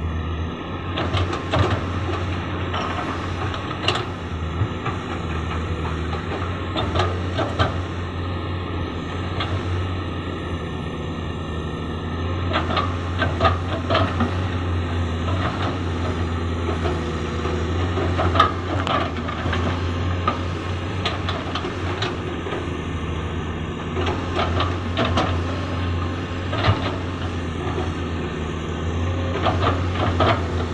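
Komatsu PC200 hydraulic excavator's diesel engine running steadily under load as it digs, with scattered knocks and scrapes of the bucket and rock every few seconds.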